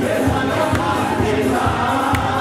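Live dance music with a keyboard and a steady beat, a man singing into a microphone and many voices singing along with him.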